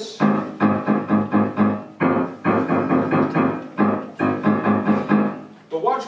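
Grand piano played in the low-middle register: the same chord struck over and over in a quick, uneven rhythm, in short phrases with brief breaks between them.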